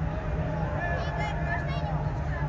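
Voices of players and coaches calling out across a football pitch, with a few short higher shouts about halfway through, over a steady low hum.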